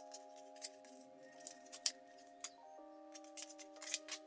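Quiet background music with held chords, over irregular sharp clicks and scrapes of a device and its white moulded plastic packaging tray being handled, the loudest click about two seconds in and a quick run of clicks near the end.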